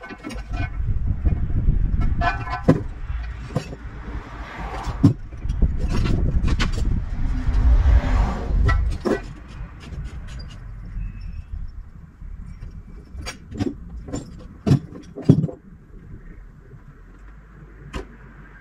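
Low rumble of heavy machinery with irregular sharp knocks and clanks, loudest in the first half and easing after about ten seconds. There are a couple of short pitched tones near the start.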